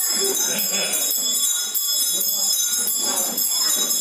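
Small ritual bells jingling without a break, with voices chanting and talking underneath.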